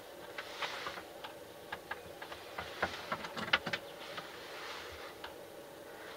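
Faint scattered clicks and taps of hands handling a small Element flat-screen TV on a wooden bench, over a faint steady hum.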